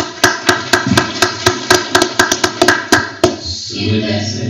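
Audience applause, with sharp claps close to the microphone about four a second over a steady background of voices, dying away about three seconds in.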